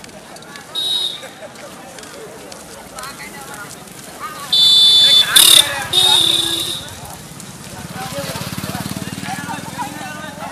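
Busy street with many people talking. A loud, shrill horn sounds for about two seconds midway, and a motorcycle engine runs past near the end.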